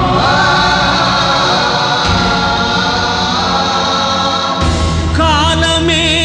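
Devotional film song music: a choir holds long sustained notes over orchestral backing. About four and a half seconds in, a heavy bass comes in and a wavering, ornamented melody line starts.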